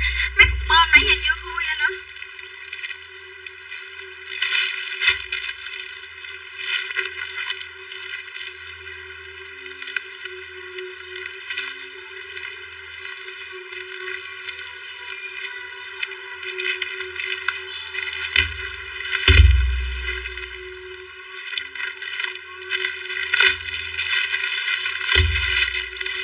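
Plastic packaging crinkling and tearing as a parcel is cut open with scissors and the bagged clothes are pulled out. A few dull handling thumps come near the end, over steady background music.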